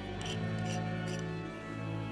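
Church organ playing long held chords, with three light clicks in the first second or so.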